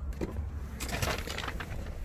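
Rustling, shuffling and a few light clicks of someone climbing into a pickup's cab and settling into the seat, over a steady low rumble.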